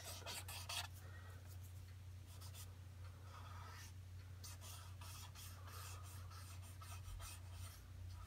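Faint, quick repeated strokes of a drawing pencil scratching on toned sketch paper, over a steady low electrical hum.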